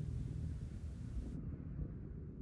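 Wind buffeting the microphone, a steady low rumble with no distinct events; the faint high hiss above it cuts out about one and a half seconds in.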